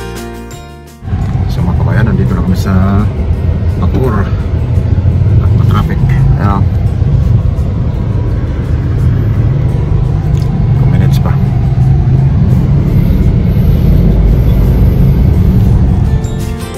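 Loud, steady low rumble of a moving car heard from inside the cabin: road and engine noise while driving. Brief voices come through a few times in the first half, and music fades out in the first second.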